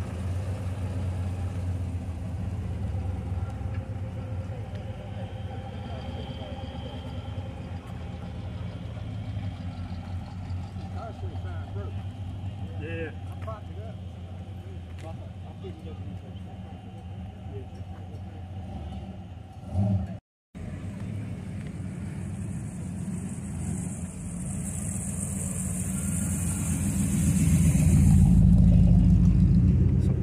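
Classic V8 car engines running at low speed as cars roll slowly by, a steady low rumble. Over the last several seconds a C3 Corvette's V8 grows louder as it drives up close.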